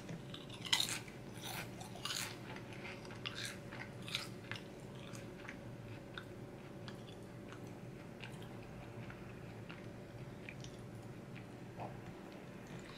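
A person chewing a mouthful of barbecue potato chip with a sour gummy on it: a run of crisp crunches, dense at first and thinning out after about five seconds.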